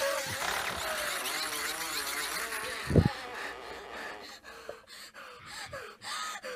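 Horror film soundtrack: a hissing ambience with faint wavering tones, a single deep thud about halfway through, then quieter scattered clicks and rustles.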